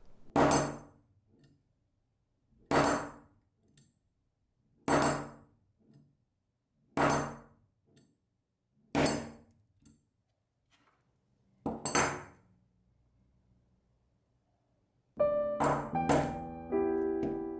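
A metal tool strikes a bare Gorilla Glass Victus+ phone cover-glass panel six times, about every two seconds: sharp knocks that ring briefly, five guillotine-test drops and then one hard hit. Soft piano music comes in near the end.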